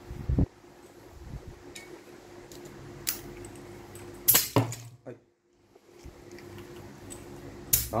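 Quiet handling of a coiled air hose and its metal blow gun and couplers: a few scattered clicks and clinks over a low background hum, with a second of dead silence a little past the middle.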